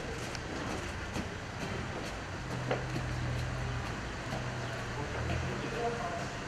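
Outdoor background noise with a low steady hum that comes in about two and a half seconds in, breaking off briefly a couple of times, and a few faint clicks.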